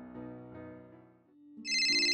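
Soft background music fades out. About one and a half seconds in, a cell phone starts ringing with a rapid, high electronic trill, as a plucked guitar tune begins under it.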